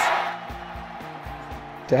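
Stadium game-broadcast noise fading out over the first half second, leaving soft background music with low held notes.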